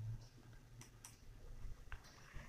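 Quiet room with a low steady hum and three faint, sharp clicks.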